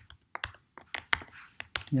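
Computer keyboard keystrokes: about seven sharp, separate key clicks in under two seconds, as garbled text in a line of code is deleted and the cell is run again. A man's voice starts right at the end.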